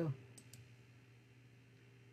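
Two quick, faint computer mouse clicks, close together, about half a second in.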